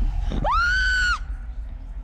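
A woman's high-pitched scream, about three-quarters of a second long: it shoots up sharply in pitch, holds, then breaks off.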